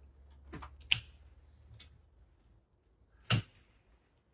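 Bypass secateurs cutting through the top of a Japanese white pine's trunk: a few faint clicks in the first two seconds as the blades bite, then one sharp snip a little over three seconds in as the cut goes through.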